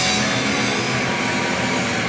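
Punk rock trio playing live at full volume: distorted electric guitar, bass guitar and drum kit through a PA, one dense, steady wall of sound.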